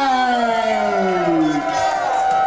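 A man's long, drawn-out yell that falls slowly in pitch and breaks off about one and a half seconds in, followed near the end by another held yell at a steadier pitch.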